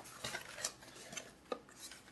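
Cardboard packaging being handled: a sleeve sliding off a small box, with faint rubbing and scraping and a few light taps.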